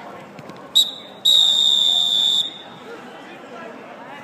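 Referee's whistle: a short pip, then one long, loud blast of a little over a second.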